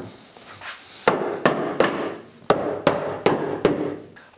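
About eight sharp wooden knocks, each with a short ring, coming roughly three a second from about a second in.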